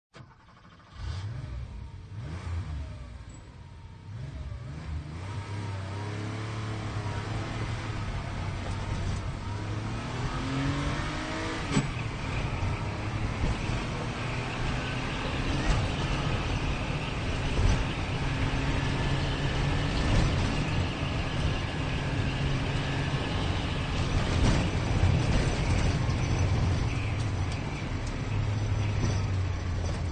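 Sports car engine accelerating hard. It comes in about a second in, and its pitch climbs and drops through repeated rising runs. It then runs steadily at high revs, growing gradually louder, with a few short knocks.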